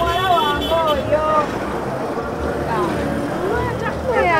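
A woman speaking, with a low steady rumble in the background.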